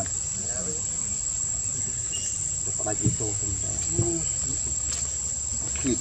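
Steady, high-pitched drone of insects in the forest, one unbroken tone throughout.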